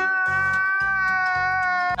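Comedic meme sound effect inserted in the edit: one long, wailing note held at a steady pitch over a soft, pulsing music beat, cut off abruptly at the end.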